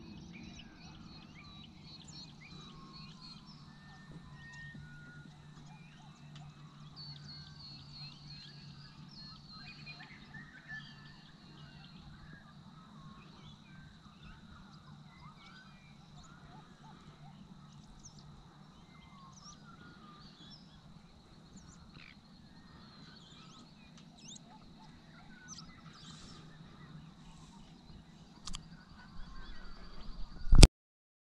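Many birds chirping and whistling at once, faint, over a steady low hum, with a couple of brief knocks near the end.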